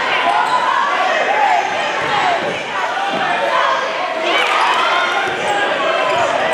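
Basketball being dribbled on a hardwood gym court, with a crowd and players' voices carrying through the large, echoing gym.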